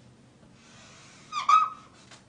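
Dry-erase marker drawing a long stroke down a whiteboard: a faint scratchy hiss, then two short high squeaks about a second and a half in.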